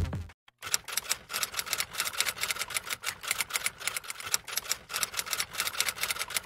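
Typewriter typing sound effect: a fast, uneven run of sharp keystroke clicks that accompanies on-screen text being typed out, after the last of the intro music dies away.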